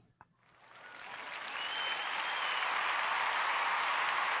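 Applause, swelling over about the first second and a half and then holding steady.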